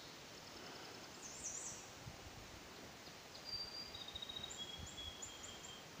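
Faint outdoor ambience with distant birds calling: a quick run of high chirps about a second in, then from halfway on a series of thin whistled notes, each a little lower than the last, with short chirps near the end.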